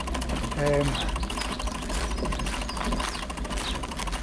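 Bicycle freewheel hub ticking rapidly and evenly as the rider coasts along a dirt path, over a low steady rumble.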